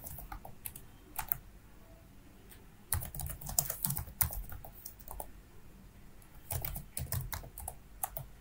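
Computer keyboard keys being typed in three short bursts of clicks with pauses between, as terminal commands are typed out.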